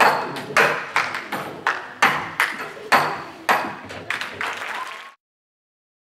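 Audience applause echoing in a large hall. It comes in a run of loud surges about half a second apart and cuts off abruptly about five seconds in.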